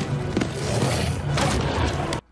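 Film soundtrack playing loudly: orchestral music mixed with dense, noisy action sound effects and a low rumble.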